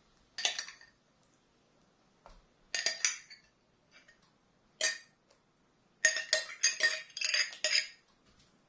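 A metal spoon clinking and scraping against glass as salsa is spooned from a glass jar onto food in a glass baking dish: a few separate clinks, then a quick run of clinks near the end.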